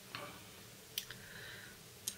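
A few faint clicks and light taps as a Fenix TK35 aluminium flashlight is turned over in the hands, with one sharper click about a second in.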